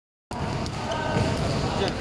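Basketballs bouncing on an indoor court floor in an irregular, overlapping patter of thumps, with voices over them.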